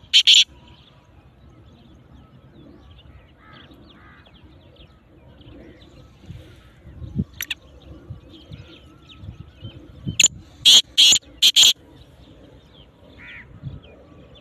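Black francolin calling loudly in short phrases of quick notes: the end of one phrase right at the start, a single note about halfway, and a full phrase of about five notes near the end. Faint chirps of other birds fill the gaps.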